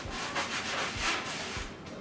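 A wet washcloth rubbed back and forth over the black fabric of a backpack to scrub off scuff marks, in quick repeated strokes that fade out near the end.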